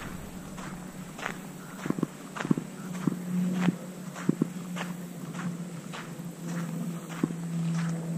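Footsteps walking across a sandbar at an even pace, under two steps a second. A steady low hum runs underneath and grows louder near the end.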